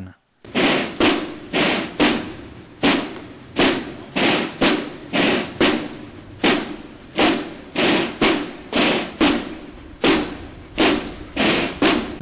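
Drum of a military band beating a steady march rhythm, about two strikes a second, each hit ringing briefly, as honours are rendered to the flag.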